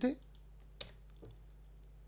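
A few isolated computer keyboard keystrokes, the sharpest a little under a second in, with fainter clicks around it, over a low steady hum.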